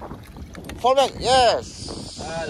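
Excited shouts of "yes!" about a second in, over wind buffeting the microphone. Near the end, water splashes as a hooked fish is lifted thrashing in a landing net.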